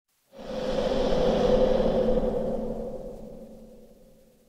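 Intro logo sound effect: a whooshing swell with a steady tone running through it, rising quickly and then slowly fading away over about three seconds.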